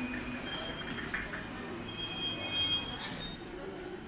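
Indian Railways express coaches rolling slowly to a stop, with a high squeal of several steady tones from about one second to three seconds in as the train brakes.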